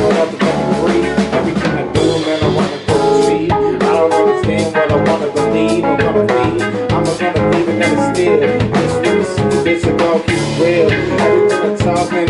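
A live band playing an instrumental hip-hop passage: drum kit, electric guitar, bass guitar and a Hammond stage keyboard together, with steady drum hits throughout.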